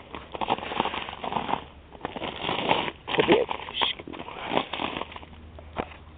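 Footsteps crunching through icy snow and ice-coated brush, with a dense, irregular run of crackles and snapping twigs as branches brush past the camera.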